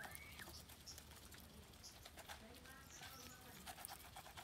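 Geese pecking grain from bowls: faint, scattered clicks and taps of bills on feed and bowl, with a few short, faint bird calls near the start and about two and a half seconds in.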